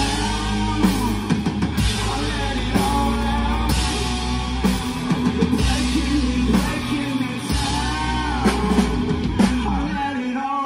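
Live rock band playing: drum kit, electric guitars and bass guitar together at full volume.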